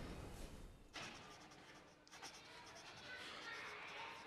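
Faint rustling, scratching noise in an otherwise near-silent room.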